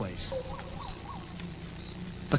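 Crickets chirping, a steady high-pitched trill.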